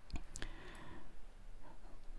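Two quick computer mouse clicks about a quarter second apart, then faint room noise.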